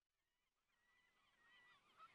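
Near silence, with faint, wavering, bird-like chirping calls fading in about half a second in and slowly growing louder.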